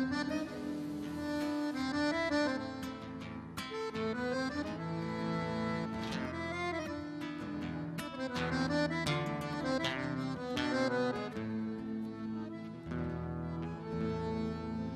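Live malambo accompaniment: an accordion playing the melody over strummed guitar and a bombo legüero drum, with sharp percussive strikes throughout.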